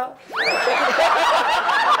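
A group of men laughing loudly. It begins about a third of a second in with a high, sharply rising cry and carries on as a dense burst of laughter.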